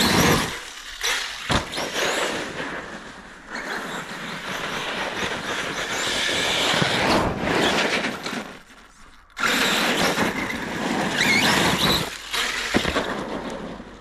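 Arrma Kraton 6S RC monster truck's brushless motor whining in bursts as it accelerates, with its tyres squealing and scrabbling on icy pavement and a sharp knock about one and a half seconds in. It cuts out near the end, its battery plug knocked loose by hard landings on the blacktop.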